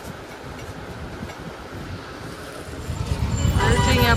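Low background hum for about three seconds, then a loud, steady road-and-engine rumble of street traffic heard from inside a moving rickshaw.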